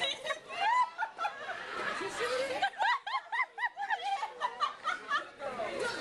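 People talking and laughing, the words not clear enough to make out, with snickering laughter mixed into the chatter.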